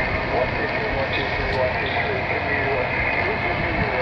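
A distant station's single-sideband voice coming through a Yaesu FT-817ND receiver from the FO-29 satellite downlink, faint and wavering under steady hiss.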